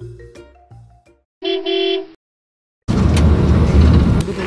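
Background music with mallet notes dies away about a second in. Then comes a single short horn toot, and from about three seconds in the loud, steady road noise of a moving coach.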